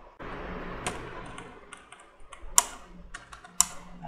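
Computer keyboard keystrokes: a handful of sharp, irregularly spaced key clicks over a faint background hiss.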